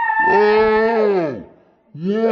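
A woman screaming in fright: a high held scream breaks off just after the start into a lower drawn-out cry, which falls in pitch and stops about a second and a half in.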